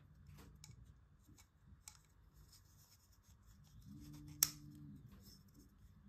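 Faint handling noise of a 3D-printed plastic end cap fitted with O-rings being turned in the hands: light rubs and small clicks, with one sharper click about four and a half seconds in. A faint low hum comes and goes shortly before that click.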